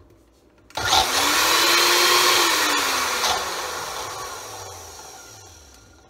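Countertop blender motor starting up and chopping chunks of cheese-and-mayo sandwich with no liquid in the jar. It starts suddenly just under a second in and runs loud for about two and a half seconds. It then winds down in falling pitch, fading over the last few seconds.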